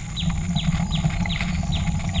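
Electric wheelchair rolling over brick paving, a steady low rumble of motor and wheels. Over it runs a quick regular series of short, high, falling chirps, about three a second.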